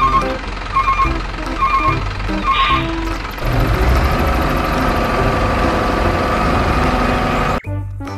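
Short electronic beeps in small groups about once a second, like a truck's reversing beeper. From about three and a half seconds in comes a steady engine-like drone with a low rumble, which cuts off suddenly near the end.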